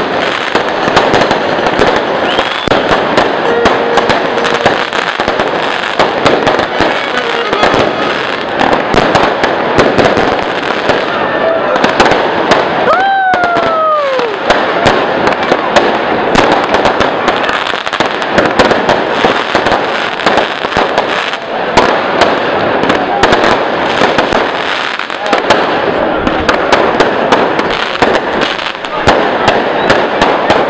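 Fireworks display: a dense, continuous run of crackling firecracker bursts and bangs, with one falling whistle about halfway through.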